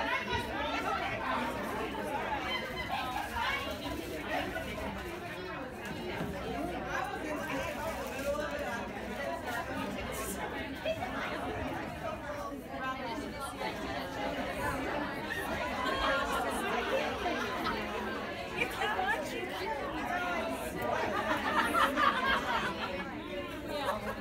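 Indistinct chatter of many women talking at once, a steady babble of overlapping conversations in a large room.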